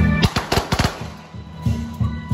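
Procession music broken by a rapid run of about eight sharp cracks in under a second, a string of firecrackers going off, before the music's low notes come back near the end.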